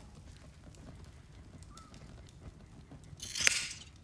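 Low background ambience, then one brief rushing noise swell, about half a second long, a little past three seconds in.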